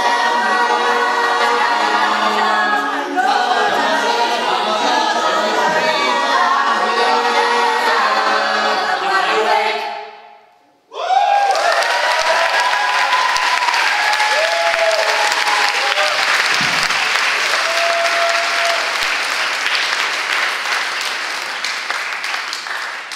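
Mixed a cappella vocal group singing in close harmony, with no instruments; the song ends about ten seconds in, fading to silence. The audience then breaks into applause, which slowly dies away near the end.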